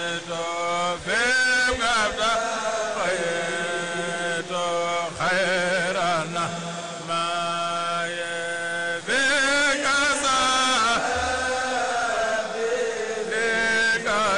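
Men chanting Mouride devotional verses into microphones. The chant is a continuous sung line of long held notes broken by wavering, ornamented turns, loudest about a second in and again about nine seconds in.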